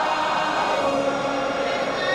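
Gospel choir singing in harmony, holding long notes.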